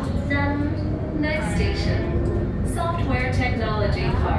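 A woman's voice speaking in three short spells over the steady low rumble of a light-rail tram running, heard from inside the cabin.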